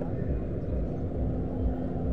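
Outdoor car-park background: a steady low rumble with a faint constant hum, and indistinct voices of people around.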